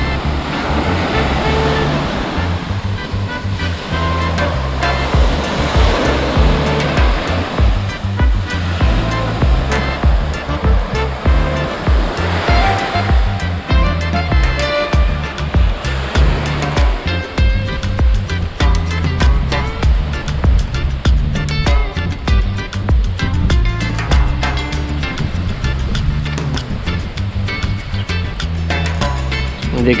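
Background music with a steady beat and a stepping bass line, over the rush of sea waves breaking on a sandy shore that is strongest in the first half.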